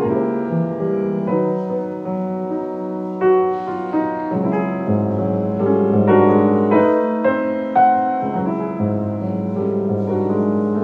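Solo piano playing music: single notes and chords struck about once or twice a second over held, ringing lower notes.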